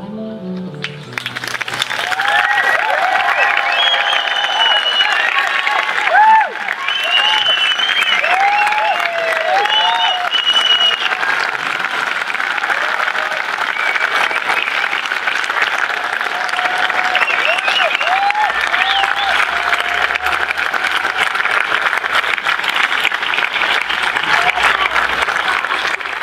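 Audience applauding as the band's last notes fade, the clapping swelling in about a second in and running on, with cheering voices rising and falling over it, mostly in the first half.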